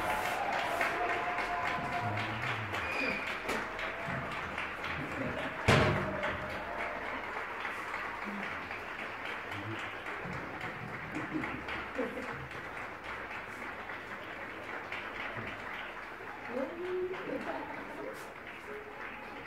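Faint, scattered applause with a few voices after the music stops; a held accordion note dies away in the first second, and a single sharp knock sounds about six seconds in.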